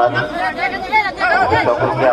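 Many men's voices talking and shouting over one another in an excited, overlapping argument.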